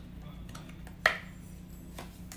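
Handling noise from tarot cards: a few faint clicks and one sharp click about a second in, over a steady low hum.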